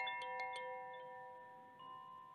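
Metal chimes ringing and slowly fading, with a few light strikes in the first second and a new chime note entering near the end.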